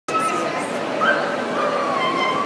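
A dog whining: three high, thin whines, the middle one sliding upward and the last one drawn out, over steady crowd chatter.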